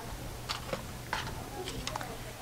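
A handful of light, separate clicks and taps as paint cups are handled, one set down and another picked up.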